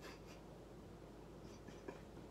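Faint brushing strokes of a makeup brush on a face, strongest in the first half-second. A small tick comes near the end.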